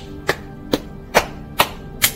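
Cupped hands slapping the outsides of the legs: four slaps about two a second, over soft background music.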